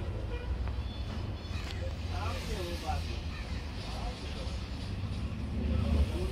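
Passenger coach of the Kanchanjunga Express rolling slowly through a station, a steady low rumble, with people's voices talking over it about two to three seconds in.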